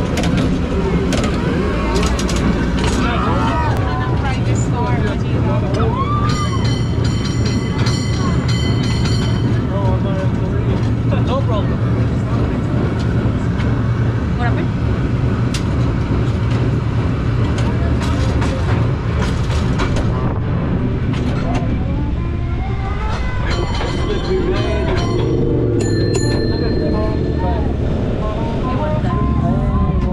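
San Francisco cable car running on its rails, a steady low rumble with clattering knocks from the track and machinery. The car's bell rings in quick repeated strokes twice, about seven seconds in and again about twenty-three seconds in.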